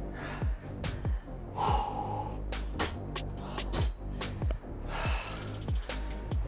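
Background music with a steady kick-drum beat, with a man's heavy breathing heard over it a couple of times.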